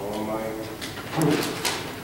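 A person's voice, faint and broken, with a couple of short light knocks about one and a half seconds in.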